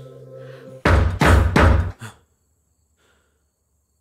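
Three loud, hard knocks on a wooden front door, about a third of a second apart, with a fainter fourth just after. The soft droning music cuts off at the first knock.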